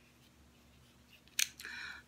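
Near silence, then about a second and a half in a single sharp click followed by a short, soft scrape as small items are shifted on a cloth-covered table.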